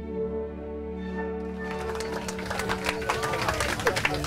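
Orchestral music with violins playing held notes; about a second and a half in, dense applause and diners' voices rise over it and grow louder.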